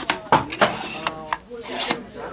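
Plastic stroller snack tray being handled and swivelled on its clamp: several sharp plastic clicks and rubbing, with a longer scraping rub near the end.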